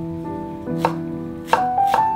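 A santoku knife chopping a Japanese long onion (naga-negi) on a wooden cutting board: three sharp knife strikes against the board, spaced well apart, starting a little under a second in. Piano music plays underneath.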